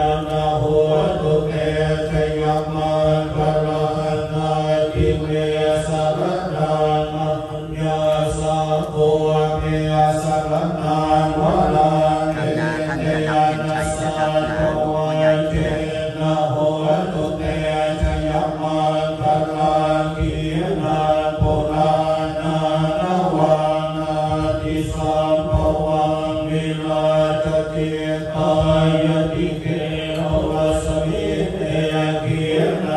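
Buddhist monks chanting Pali verses together in a steady, low monotone, in the consecration rite for amulets.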